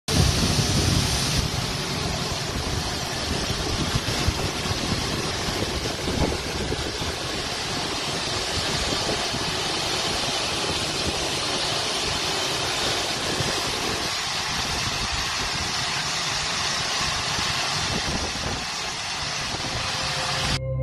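Steady, even roar of aircraft turbine noise on an airport apron, from a parked Ilyushin Il-76 military transport plane.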